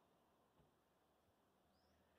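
Near silence: faint outdoor background.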